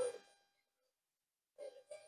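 Near silence between spoken rep counts, with the tail of a word at the very start and one faint, brief sound near the end.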